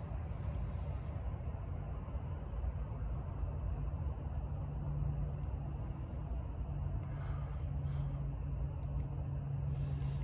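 A steady low rumble of background noise, with a couple of faint clicks near the end.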